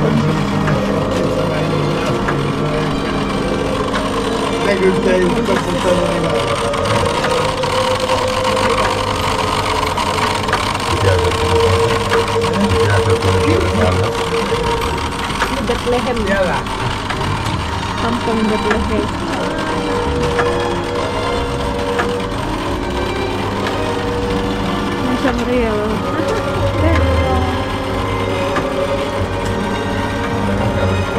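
Indistinct voices of several people talking over one another, with music playing in the background.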